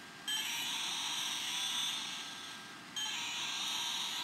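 A steady, high-pitched electronic tone like an alarm or buzzer, sounding twice: once for about two and a half seconds, then again after a short break.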